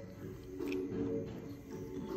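Background music with low notes held steadily.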